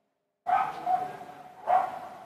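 A dog barking, about three sharp barks, each trailing off in a long echoing tail.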